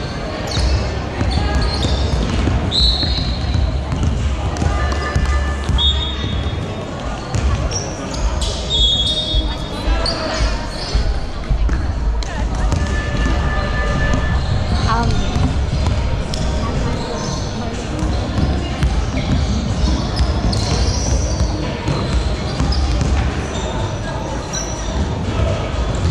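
Live basketball game in a large hall: the ball bouncing on the hardwood court, several brief high sneaker squeaks, and players' indistinct voices, all echoing over a steady low rumble.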